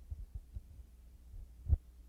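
A few soft, dull low thumps, with a louder one near the end, over a steady low hum.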